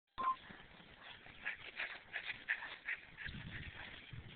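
A short beep right at the start. Then dogs give a string of short, quick play vocalizations from about one and a half to three seconds in while they chase and spar.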